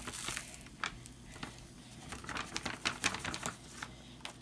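Fizzing glass of oil over coloured water: an irregular crackle of many small pops and clicks as bubbles burst at the surface. A sheet of paper rustles briefly at the start.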